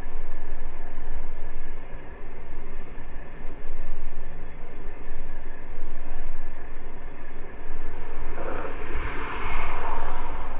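Wind buffeting the microphone of a camera riding on a moving bicycle: a low rumble that rises and falls unevenly. Near the end a louder rushing noise swells for about two seconds.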